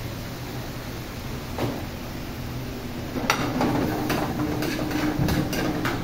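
A metal ladle clinks against an aluminium frying pan on a gas range: one clink about a second and a half in, then a run of sharp clinks through the second half, over a steady low hum.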